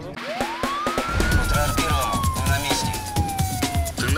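A single siren wail sound effect: it rises fast to a peak a little over a second in, then slides slowly down and cuts off just before the end. It plays over a music bed with a low beat, as the sting of a crime-news programme's closing titles.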